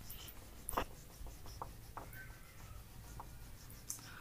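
Faint, uneven rubbing of a duster wiping marker writing off a whiteboard, in short strokes with a few light taps.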